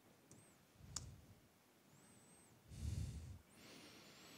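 A man breathing out heavily near the microphone, twice, with one sharp click about a second in.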